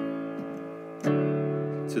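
Two sustained chords played as steps of a descending bass walkdown from C towards the five chord of the new key. The first fades slowly, and a louder chord is struck about a second in and held.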